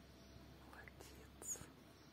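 Near silence with faint whispering, and a short hiss about one and a half seconds in.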